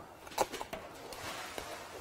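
A sharp tap about half a second in, then a few light ticks and a soft scratchy rubbing: a small hand tool being pressed and worked against a laser-cut MDF lid to poke out a leftover cut-out piece.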